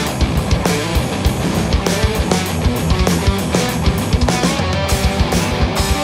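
Progressive metal (djent) band recording playing: distorted electric guitars, bass and drums, with busy, closely spaced drum hits.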